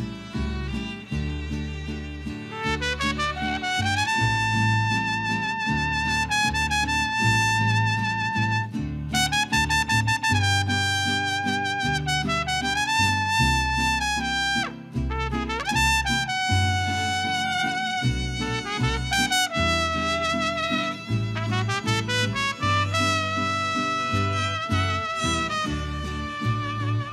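Mariachi band playing an instrumental passage with no singing. A trumpet leads the melody in long held notes with several upward slides, over violins, strummed guitars and a deep plucked guitarrón bass line.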